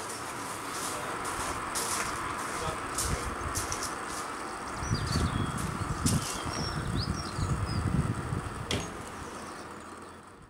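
Footsteps crunching on gravel, loudest in the second half, over a steady outdoor background hiss, with a few short high chirps in the middle.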